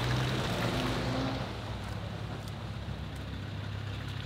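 Land Rover Discovery's engine running at low revs as it drives slowly past through mud. It is a steady low hum, with a fuller noise of the passing vehicle in the first second or two that then fades.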